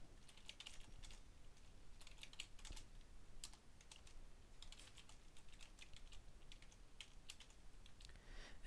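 Faint typing on a computer keyboard: quick, irregular runs of keystrokes with short pauses between them as a line of code is entered.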